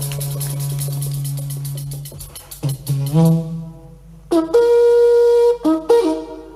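A band plays with rapid percussion over a steady low note, and this breaks off about two seconds in. Conch shells are then blown as a wind instrument: a short lower note about three seconds in, then a higher, brighter note held for over a second, and a short note near the end.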